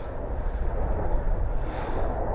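Rescue helicopter flying overhead, a steady low noise.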